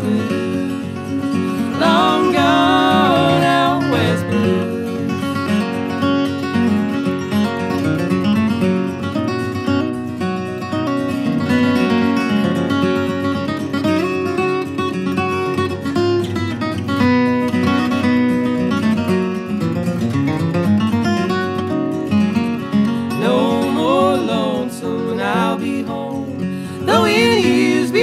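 Instrumental break in an acoustic country-blues song, played on acoustic guitar and other plucked strings.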